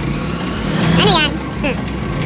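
Bystanders' voices talking over a steady low rumble of vehicle engines in the street.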